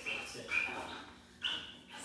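Dutch Shepherd whining in short, high-pitched whines: one at the start, one about half a second in and one near the end, the excited whining of a dog reunited with its owners.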